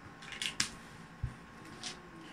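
Sleeved trading cards being handled and set down on a rubber playmat: a few light clicks and taps, a soft thump a little after a second in, and another click near the end.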